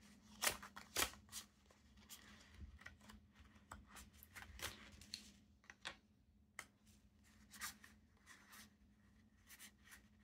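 Faint rustling and scattered light clicks of card ink swatches on a metal ring being flipped through and handled.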